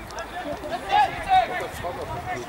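Football players shouting on the pitch: two loud calls about a second in, among other voices calling during play.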